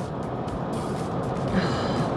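Steady road and engine noise inside the cabin of a moving car.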